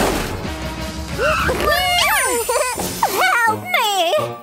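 A cartoon crash sound effect as a car hits, then cartoon character voices exclaiming in sliding, wavy pitches over background music.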